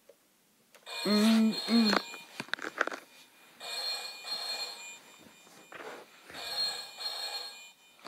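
Electronic Deal or No Deal tabletop game's speaker playing a telephone-ring sound effect: two short low notes about a second in, then two bursts of trilling ring, each about a second and a half long.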